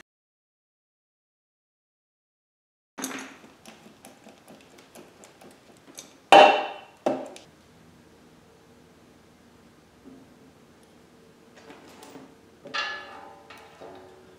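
Metal-on-metal clicks and clanks as the bevel gear box of an Allis Chalmers 310 lawn tractor is handled and fitted against its steel frame. After about three seconds of dead silence come a few light clicks, one loud clank with a brief ring a little past halfway, and another clank near the end.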